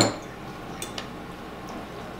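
Quiet room tone at a dinner table, opening with a sharp tap and then a couple of faint clinks of tableware about a second in.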